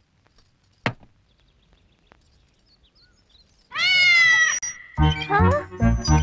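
Film soundtrack: a single sharp click about a second in, then quiet. Near the middle comes a high note that slides up and holds, and then background music with a steady beat begins.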